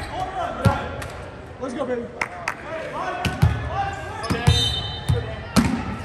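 A volleyball bounced on a hardwood gym floor, several separate thuds a second or so apart, each with a short echo from the hall, among voices of players and spectators.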